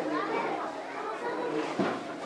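Many young children talking and calling out at once, a steady overlapping hubbub of small voices.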